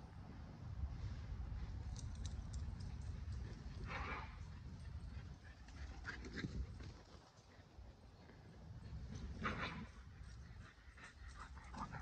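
A Keeshond and a Boston Terrier playing chase on a grass lawn: faint footfalls and rustling, with two brief dog vocal sounds, about four seconds in and near ten seconds.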